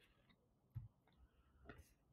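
Near silence: room tone with two faint clicks, one about a second in and a fainter one near the end.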